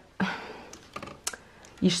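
Clothes on hangers being pushed along a wardrobe rail: a short rustle of fabric and hangers sliding, then a few sharp clicks of hangers knocking together.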